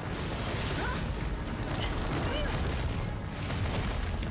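Fight-animation sound effects: a sustained rumbling, explosion-like roar of rock and earth being moved, with a few faint short cries over it.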